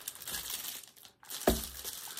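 Plastic bag wrapping crinkling as a wrapped item is handled and drawn out of a small cardboard box. The rustling stops briefly about a second in, and there is a single sharp tap at about a second and a half.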